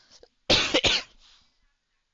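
A person coughing close to the microphone: two quick coughs about half a second in.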